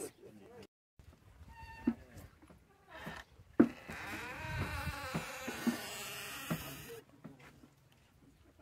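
A farm animal calling: a short pitched call about two seconds in, then a longer wavering bleat-like call of about three seconds that cuts off abruptly.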